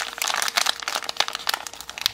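A small crimp-sealed toy wrapper being crinkled and pulled open by hand: a dense, irregular run of crackles and crinkles.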